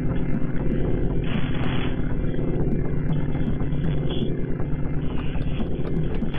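A low, steady droning rumble made of several sustained deep tones, with a fast, even flutter in its loudness.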